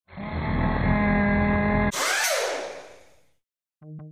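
Logo-intro sound design: a loud steady synth chord that cuts off abruptly about two seconds in, giving way to a whoosh with a falling sweep that fades out. Near the end, pulsing synthesizer music begins at about six beats a second.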